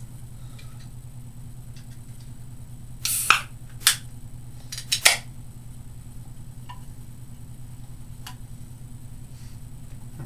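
An aluminium drink can's pull tab being opened: a short hiss about three seconds in, then several sharp clicks of the tab. A steady low hum runs underneath.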